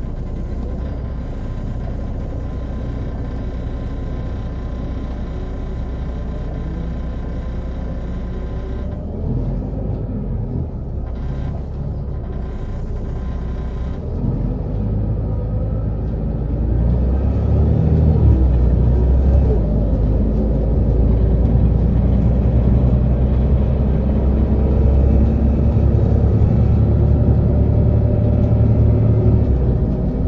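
Volvo 8700LE B7RLE city bus with its six-cylinder diesel running steadily, then about halfway through it pulls harder: the engine note rises in pitch and grows louder as the bus accelerates.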